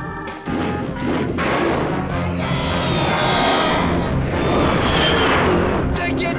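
Cartoon soundtrack music over a noisy sound effect that starts suddenly about half a second in and keeps going, with a faint falling tone in the middle.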